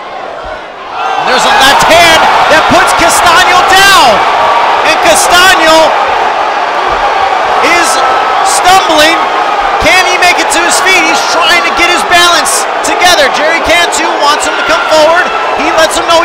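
A large arena crowd erupting about a second in and then roaring steadily, full of shouts and screams and scattered sharp knocks, in reaction to a knockdown.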